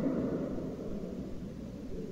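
Pause in a recorded speech: the faint hiss and low rumble of the recording's background noise, with the last of the voice's echo dying away at the start.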